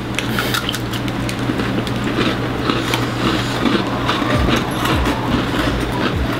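Two people chewing crunchy watermelon cookies close to the microphone: a dense, continuous run of crackly crunches.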